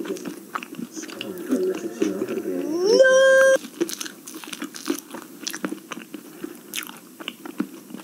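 A voice slides upward into a loud held note about three seconds in, which cuts off suddenly, followed by many scattered small clicks.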